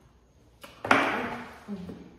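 A woman's murmured "mm-hmm" while eating. About a second in, a sudden sharp, hissing sound starts together with it and dies away over most of a second.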